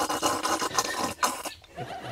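A man slurping rice porridge straight from a bowl: one long, loud, wet slurp, sucked in fast like a water pump drawing water, that breaks off about one and a half seconds in.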